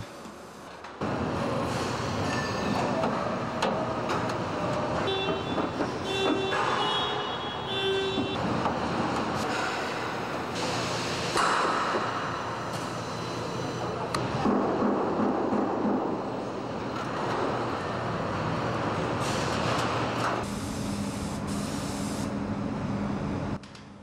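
Car assembly-line factory noise: a steady din of machinery and hissing air that shifts in character every few seconds. About five seconds in comes a run of short repeated beeps lasting a few seconds.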